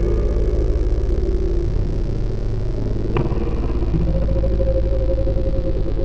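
A steady, low rumbling drone with a few held tones above it, the dark ambient soundtrack of an experimental film. There is one sharp click about three seconds in.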